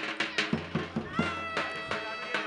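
Traditional Turkish folk music: a drum struck in a steady beat, about three or four strokes a second, under a high melody line that slides in pitch.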